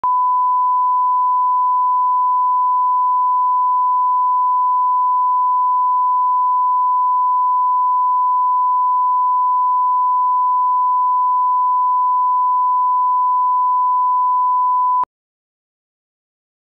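Broadcast line-up test tone played with colour bars: one loud, steady beep at a single pitch that cuts off suddenly about fifteen seconds in.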